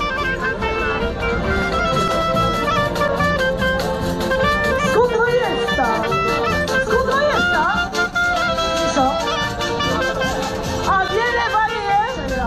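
A Kashubian folk band plays a tune, with a clarinet carrying the melody over accordion and double bass.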